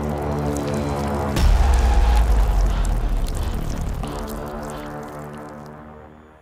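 Background music with sustained tones, a deep low hit about a second and a half in, then fading out near the end.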